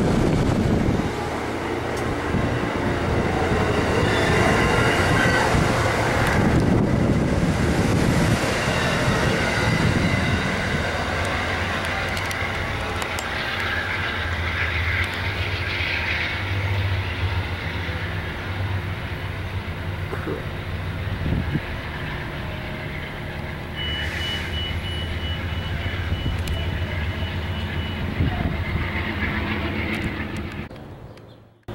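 Amtrak passenger train's stainless-steel cars passing close by, wheels running on the rails with a continuous rush of noise that eases off slowly as the train draws away. A thin steady high whine sounds for a few seconds near the end.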